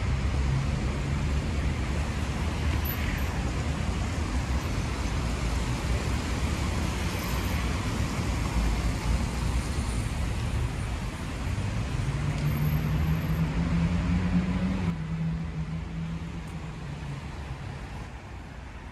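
Steady road traffic on a wet multi-lane avenue: cars passing with continuous road noise. A heavier vehicle's engine drone comes in about two-thirds of the way through, then the traffic fades somewhat near the end.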